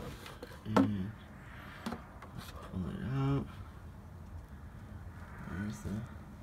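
Short wordless vocal sounds from a person, amid clicks and knocks of plastic gear-oil bottles and a hand pump being handled as the pump is moved to a fresh bottle.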